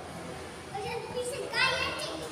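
Young children's voices during play: short calls, then a loud, high-pitched shout from a child near the end.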